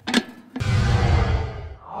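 Transition sound effect: a short sharp hit, then a loud whoosh with a deep low boom that swells and fades away.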